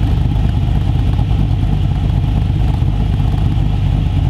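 LS V8 with a VCM9 camshaft idling through a quad-tip exhaust: a steady, noticeable idle that is not rough.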